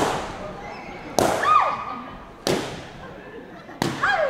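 Inflated latex balloons bursting with loud, sharp bangs, four in a row about a second and a quarter apart. A high shriek falls in pitch after the second bang.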